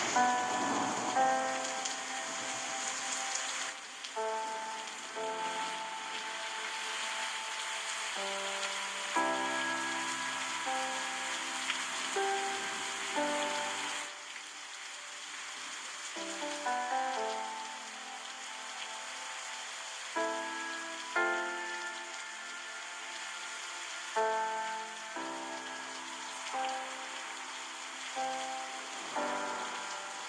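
Steady rushing water noise of a river mixed with a slow, gentle instrumental melody of single notes and chords, each note starting sharply and fading.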